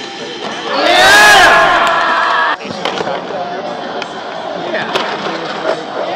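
Crowd of spectators whooping and yelling loudly together, starting about a second in and cutting off abruptly after about a second and a half. Quieter mixed voices follow.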